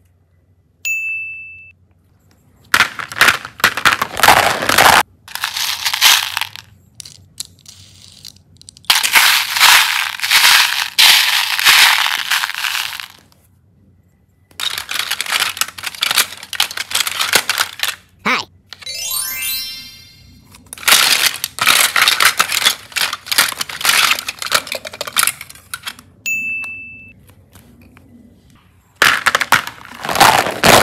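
Hard plastic toy capsules and eggs clattering and rattling as hands rummage through them, in several bursts a few seconds long with short pauses. A short ding sounds near the start and again near the end, and a rising whistle-like glide sounds a little past halfway.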